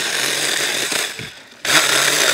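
A Seesii 6-inch cordless battery mini chainsaw cutting through small hemlock limbs without binding. The sound fades away a little after a second in and starts up again sharply near the end.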